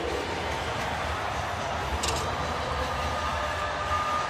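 Steady crowd noise filling a hockey arena, with one short sharp click about two seconds in.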